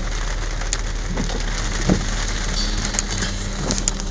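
Rain hitting a moving car's windshield and roof, heard inside the cabin over a steady low road rumble, with scattered sharper drop taps.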